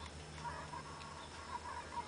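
Quiet room tone: a steady low hum with a few faint, short pitched sounds in the background.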